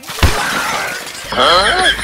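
A sharp crash like breaking glass about a quarter second in, with a short noisy tail. It is a comedy crash effect laid over powder being thrown in a man's face. About a second later comes a man's yell with wavering pitch.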